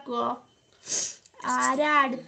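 A high-pitched voice speaking in drawn-out phrases, with a short pause and a brief breathy noise about a second in.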